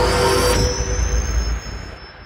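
Cinematic electronic sound effect closing an intro music track: a deep bass rumble under a thin, rising high whine and a burst of hiss that cuts off under a second in, the whole sound fading out over the last half second.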